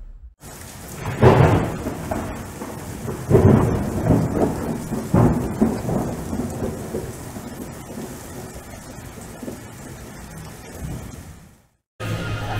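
Thunderstorm sound effect: steady rain with rolling claps of thunder, the loudest about a second in and again around three and five seconds, then dying away and fading out near the end.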